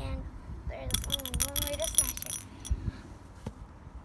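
Glass marble rattling and clinking inside the neck of a Ramune-style marble soda bottle as it is shaken and tipped: a quick run of clicks about a second in, then a couple of single clicks. The marble is trapped in the bottle's neck and will not come out.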